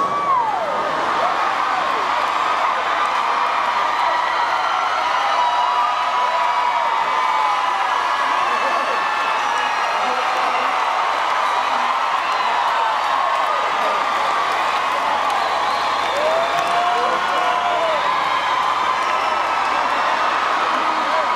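Large concert crowd cheering steadily, with many individual whoops and shouts rising and falling above the mass of voices.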